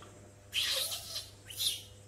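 A baby monkey's short, high-pitched squeaks: two brief calls, one about half a second in and another at about a second and a half.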